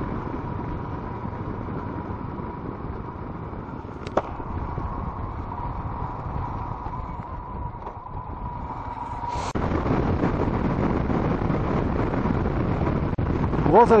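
Royal Enfield Himalayan's single-cylinder engine running while riding, with wind and road rush on the handlebar-mounted microphone. A faint steady whine holds through the first part, there is one sharp click about four seconds in, and the wind noise grows louder about nine and a half seconds in.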